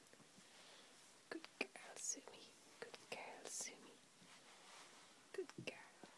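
Faint whispering with soft hissy shushing puffs, among a few small clicks and rustles.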